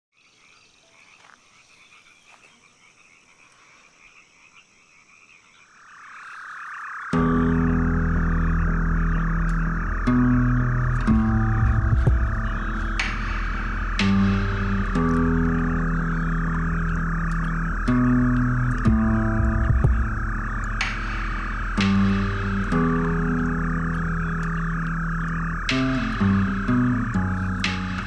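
Faint ambience at first. A dense, steady chorus of frogs swells in about six seconds in. About a second later it is joined by loud music built on slow, sustained bass notes that change every second or two.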